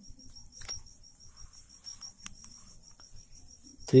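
Steady high-pitched chirring like crickets in the background, with faint soft ticks and scratches of a pen on paper; a man's voice starts right at the end.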